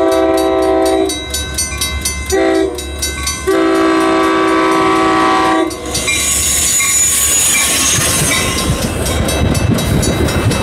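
Metra commuter train's multi-chime air horn sounding the grade-crossing signal over the steady dinging of the crossing bell: a long blast ending about a second in, a short one, then a long one. From about six seconds the train passes close by with loud wheel-on-rail noise and clickety-clack.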